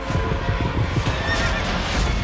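Horse whinnying over a rapid run of hoofbeats.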